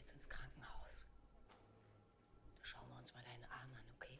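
Faint, soft-spoken German dialogue from the TV episode playing in the background, in two short stretches: one at the start and one from about two and a half seconds in.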